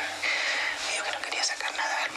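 Two women talking in hushed voices, their words too low to make out.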